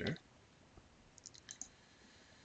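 A few faint, short clicks from working a computer's keyboard and mouse, bunched together about a second and a half in, over low room tone.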